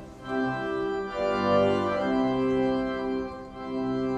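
Organ playing slow, held chords that change roughly every second.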